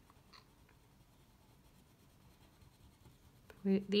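Faint scratching of a wax crayon scribbling back and forth on paper as the grass is coloured in.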